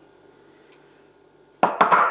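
Quiet kitchen room tone with a faint steady hum, then near the end a quick run of three sharp clicks as a kitchen drawer is pulled open.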